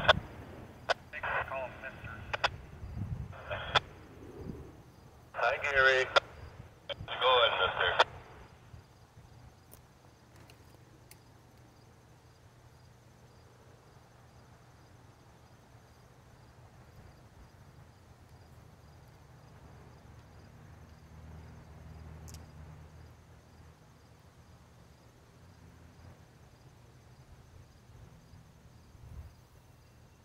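Short bursts of a man's voice over a railroad scanner radio during the first eight seconds, thin-sounding and cut off in the treble. Then a low, steady rumble fills the rest.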